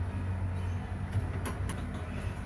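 Steady low hum, with two light clicks about a second and a half in.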